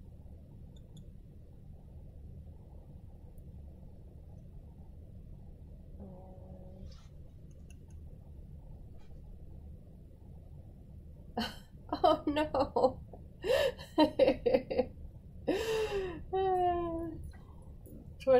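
Quiet room tone with a steady low hum for about the first ten seconds, with a faint brief voice sound about six seconds in. From about eleven seconds in, a woman's voice takes over.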